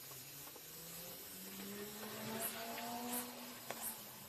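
Faint engine hum that climbs slightly in pitch over the first couple of seconds and then holds, with a few soft clicks near the end.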